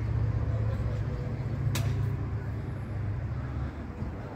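Low, steady rumble of a motor vehicle engine running, fading near the end, with one sharp click a little under two seconds in.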